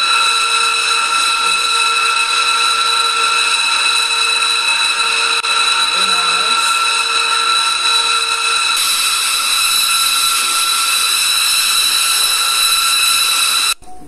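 Steady jet turbine whine over a rushing hiss, several high tones held level throughout; it brightens a little past the halfway point and cuts off suddenly near the end.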